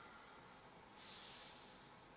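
One audible breath from a man holding a yoga pose: a soft hiss about a second long that starts about a second in, over quiet room tone.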